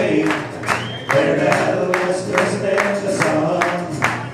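Irish folk band playing an instrumental break on mandolin, guitar, bass and bodhrán, with a steady beat about four times a second.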